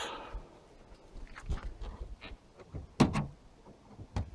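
Quiet handling sounds and light taps from a hand screwdriver being set to the screws of a caravan's aluminium window frame, with one sharper knock about three seconds in.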